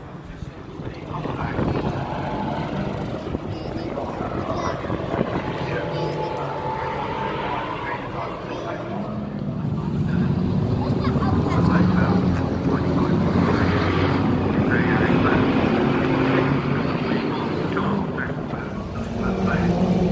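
A steady engine drone, growing louder about halfway through, with people talking over it.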